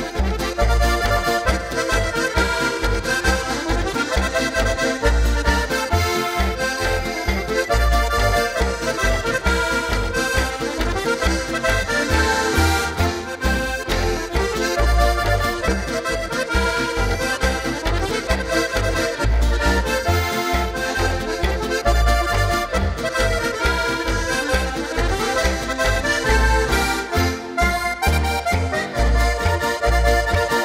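An ensemble of diatonic button accordions plays an instrumental folk tune together, with a regular pulsing bass beneath the melody.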